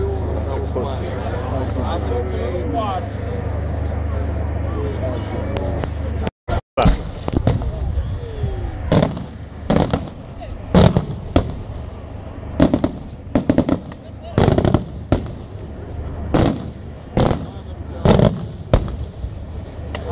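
Voices over a steady low hum for the first six seconds. Then, after a brief dropout, aerial firework shells start bursting in a fast, irregular series: well over a dozen sharp bangs, about one a second or quicker.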